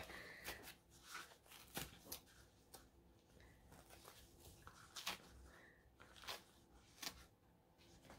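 Faint, scattered rustles and small clicks of stiff, starched craft felt as precut leaf shapes are pushed out of a die-cut felt sheet by hand.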